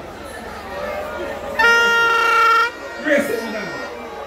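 A single steady horn-like blast lasting about a second, starting about one and a half seconds in and cutting off abruptly, over crowd chatter and bits of talk.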